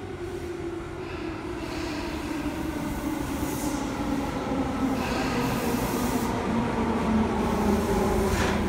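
Electric commuter train pulling into a station platform and slowing down, growing louder as it arrives. Its motors hum in low tones that slowly fall in pitch as it brakes, over a rumble of wheels on rail, with two brief high hisses partway through.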